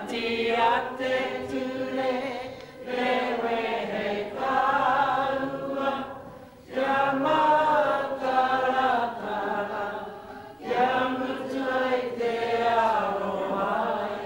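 A crowd of people singing together, a slow song in phrases of about four seconds with short pauses for breath between them.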